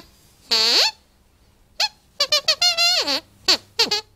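Sweep glove puppet's squeaker voice: a string of high, wobbling squeaks, some short and a few drawn out with the pitch swooping down and back up.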